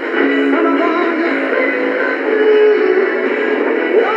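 A pop song with singing, broadcast through the small built-in speaker of a vintage Panasonic flip-clock radio just tuned to a station; the sound is thin, with no bass.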